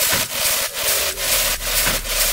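Techno track in a breakdown: the kick drum and bass drop out, leaving hissy hi-hat and percussion hits at about four a second over a noisy wash.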